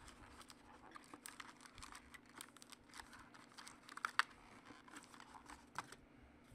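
Trading cards being handled and sorted by hand: a quick run of light clicks and flicks as the cards are shuffled through, with a sharper snap about four seconds in.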